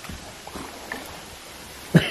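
Water dripping from the cavern roof onto an underground lagoon: a steady soft hiss with a few faint drips, and one sharp knock near the end.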